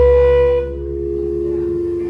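Live drone rock: a loud held, horn-like note over a steady low bass drone, stepping down to a lower pitch a little over halfway through.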